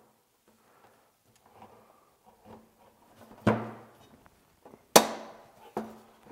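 IKEA Maximera drawer side snapping onto its back panel: a sharp click about halfway through, then a louder, sharper snap a second and a half later, with faint handling noise between. The snap is the parts locking fully home.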